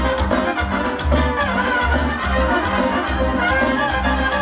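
Brass band music with trumpets playing held notes over a bass line that pulses about twice a second.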